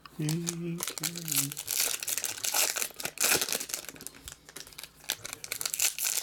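Foil wrapper of a Topps Chrome baseball card pack crinkling and tearing as it is opened by hand: a dense, crackling rustle that starts about a second and a half in.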